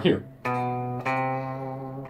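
Guitar playing two single notes a half step apart, B then C, each left to ring. The first sounds about half a second in and the second about a second in. These are the two notes with no sharp or flat between them.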